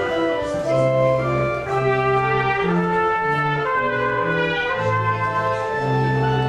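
Church organ playing the postlude: held chords over a moving bass line, with the notes changing about every half second.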